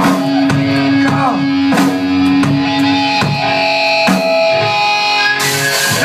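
Live metal band playing: electric guitars over a held low note, with evenly spaced drum hits. Cymbals crash in loudly near the end as the full band comes in.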